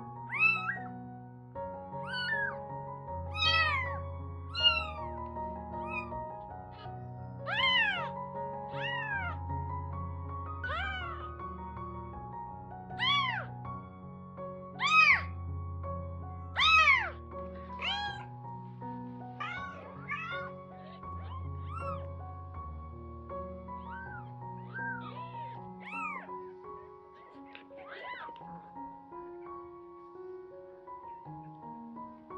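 Week-old kittens mewing over and over in short, high calls that rise and fall in pitch, about one a second with pauses, over background music.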